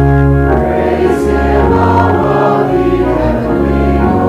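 Many voices singing a hymn together with organ, in held chords that change about once a second.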